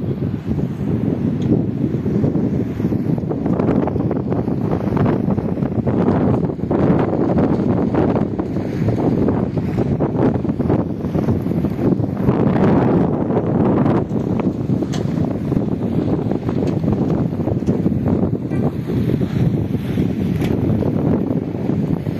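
Wind buffeting the microphone outdoors: a loud, steady low rumble that wavers in strength with the gusts.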